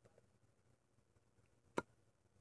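Near silence, broken near the end by one short, sharp click as fingers work the cap of a small plastic glue tube.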